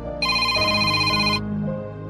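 Smartphone ringtone for an incoming call: a single high, trilling ring lasting about a second, starting just after the beginning, over soft background music.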